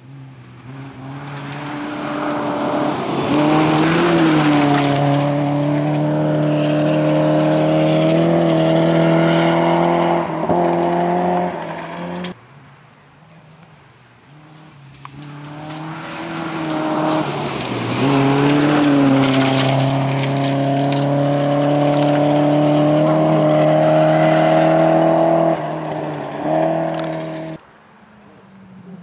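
Two rally car engines approaching one after the other on a gravel stage, each growing louder and then running hard at high revs with the pitch dipping and climbing through gear changes. Each sound cuts off suddenly, the first about twelve seconds in and the second at the end.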